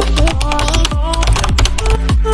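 A rapid run of keyboard-typing clicks, a sound effect laid over electronic intro music with a deep kick beat.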